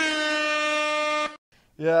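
A single steady horn blast, a rich buzzy tone held for about a second and a half that cuts off sharply. It is an edited-in horn sound effect at a transition between segments.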